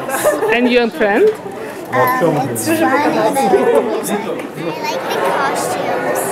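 Voices chattering: several people talking at once, with no single clear speaker.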